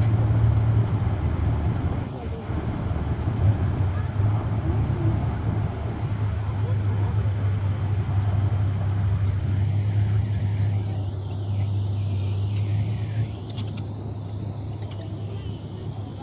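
Engines of the motor boats working a pontoon ferry, running steadily with a low drone that eases somewhat near the end.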